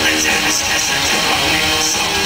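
Black metal band playing live at full volume: distorted electric guitars and drums with cymbals, heard from out in the crowd.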